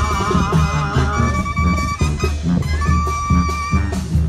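A live band playing Mexican regional music: a wavering reed-instrument melody over bass and a steady beat, with no singing in this stretch.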